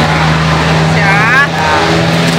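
A vehicle engine running at a steady pitch, with a short spoken "ya, ya" about a second in.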